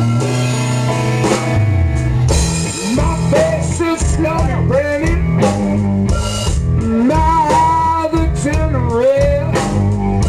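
Live blues band in an instrumental break: a lead guitar playing bent, sliding notes over bass and drums.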